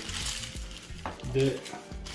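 Crumpled newspaper packing crinkling and rustling as it is pulled out of a cardboard box by hand, with a light tap just after a second in.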